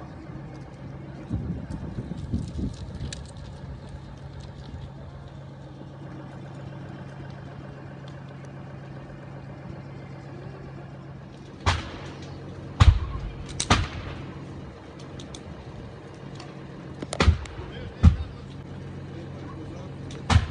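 A pile of burning waste and tyres crackling, with five sharp, loud bangs in the second half as items in the fire burst. A steady low hum runs underneath.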